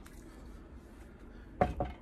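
Faint handling noise of a white plastic folding digital kitchen scale being turned over in the hands, with light plastic contact sounds; a spoken word comes in near the end.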